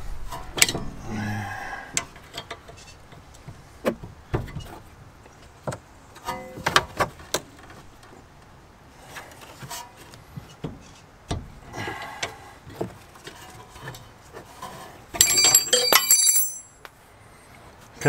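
Hand tools working on a car's rear brake caliper guide bolts: scattered metal clicks and knocks as vise grips and a wrench are fitted to the bolt, with a rapid burst of metallic clicking and ringing about fifteen seconds in.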